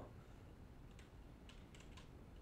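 Faint computer keyboard typing: a few soft keystrokes about a second in and a quick cluster near the end, as a word is typed in.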